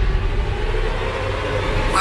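Trailer sound design: a steady rumbling hiss with a faint low drone underneath.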